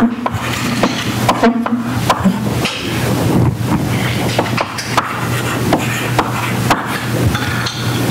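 Chalk writing on a blackboard: a quick run of sharp taps and scratchy strokes as letters and symbols of an equation are written, over a steady low room hum.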